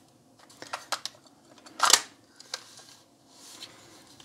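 Handling of a Panasonic RQ-NX60V personal cassette player just loaded with a tape: faint rubbing and small clicks, with one sharp click about two seconds in as the cassette door is snapped shut.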